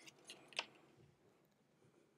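Near silence with three faint, short clicks in the first second, the loudest just over half a second in.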